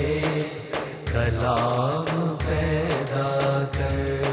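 A male voice singing devotional Urdu kalaam, drawing out one line in a wavering, ornamented note over a backing with a steady low drone and a regular beat.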